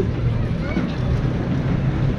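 Wind buffeting a hand-held GoPro's microphone while walking, a steady low rumble, with faint voices in the background.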